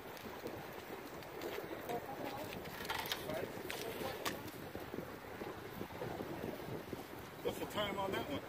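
Wind and surf on the microphone, with a few sharp slaps about three and four seconds in as a landed redfish flops on wet concrete.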